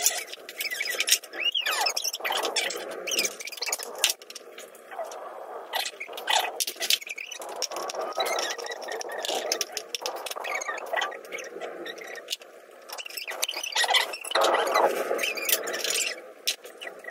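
Scraping, sharp clicks and short squeaks of metal and plastic fan parts and a screwdriver being handled as an old electric fan is taken apart.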